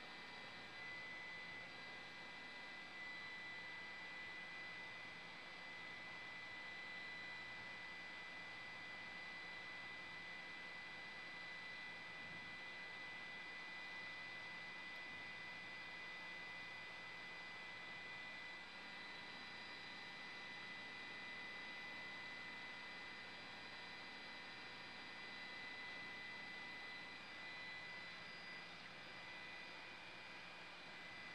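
Faint, steady hum and hiss with a high, unchanging whine, the background noise of an aerial camera's audio feed; no distinct events.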